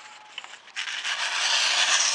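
The factory edge of a Grandway hunting knife's 440C stainless steel blade slicing through a sheet of paper: a scratchy, rasping cutting noise that starts just under a second in and keeps going.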